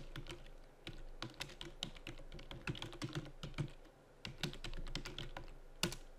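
Typing on a computer keyboard: irregular key clicks as a web address is typed, with a louder keystroke near the end.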